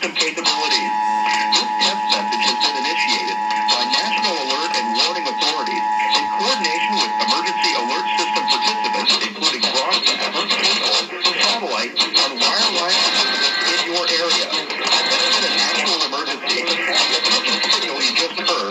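Emergency Alert System attention signal, the steady two-tone beep of about 853 and 960 Hz, played through a television and cutting off about halfway through. A jumble of overlapping, garbled voice and music audio runs under it and carries on after it stops.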